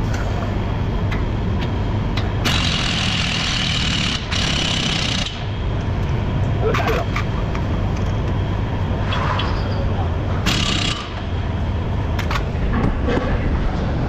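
Pneumatic air tool run in bursts on the front suspension: two hissing runs a few seconds in, with a short pause between them, and a shorter one near the end. Under it is a steady low workshop hum and scattered clinks of metal tools.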